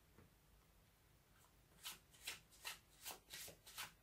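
A deck of tarot cards being shuffled by hand. It is quiet at first, then about two seconds in comes a faint run of about seven quick, crisp card strokes.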